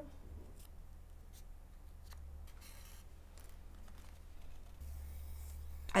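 Faint paper rustling and small ticks as a die-cut paper leaf and embroidery floss are handled and a needle is worked through the leaf, over a low steady hum.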